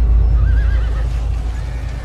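Battle sound effect of a horse whinnying briefly about half a second in, over a steady heavy low rumble of galloping cavalry hooves.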